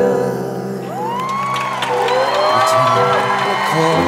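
A slow ballad played live, with held piano and backing chords. From about a second in, a few long whoops rise and fall in pitch over the music.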